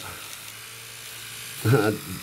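Electric toothbrush buzzing steadily as it scrubs battery-leak corrosion off the terminals. A short laugh comes near the end.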